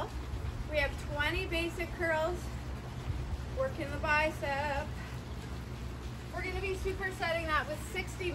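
A woman singing with vibrato in three short phrases, over a steady low rumble.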